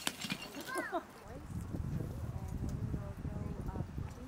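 Indistinct voices in the background, with a sharp click at the very start and a low rumbling noise from just after a second in.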